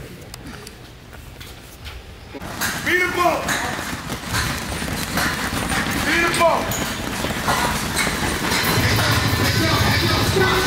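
Quiet gym room tone, then about two and a half seconds in a music track with a vocal comes in and runs on, louder.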